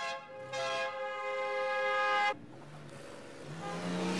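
A vehicle horn sounds in one long, steady blast of about two seconds, followed by quieter street-traffic noise.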